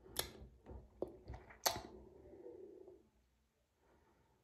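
A few soft, wet lip smacks in the first two seconds, lips pressed together over freshly applied lip tint.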